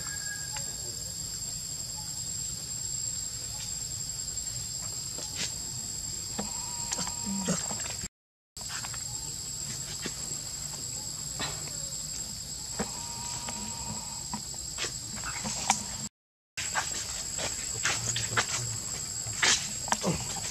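Insects droning, a steady high-pitched whine, with scattered short clicks and a few brief squeaks over it. The sound cuts out completely for a moment twice, about eight and sixteen seconds in.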